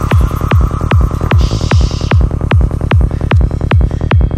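Dark forest psytrance: a kick drum about two and a half times a second, each kick dropping in pitch, with a steady rolling bass beneath and a brief hissing swell about halfway through.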